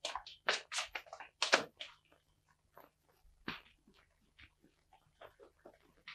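Irregular scuffing footsteps and shuffling of two men walking off on a street, thick for about two seconds and then thinning to a few faint taps, over a faint steady low hum.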